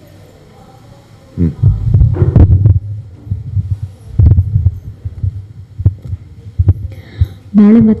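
Handheld microphone being picked up and handled: loud, irregular low thumps and bumps with a few sharp clicks, starting about a second and a half in. A woman's voice comes in through the microphone just before the end.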